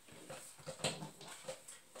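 A few faint, short taps and rustles of tarot cards being handled on a table.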